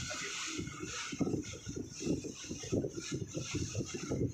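Wind buffeting the microphone on the open deck of a moving river launch, in uneven gusts over a steady high hiss.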